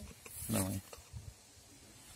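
One short spoken word, then quiet with a few faint small taps.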